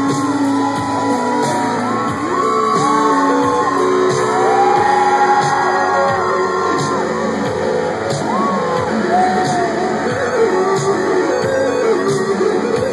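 Rock band playing live through a stadium PA, heard from among the crowd, with crowd voices shouting and whooping over the music.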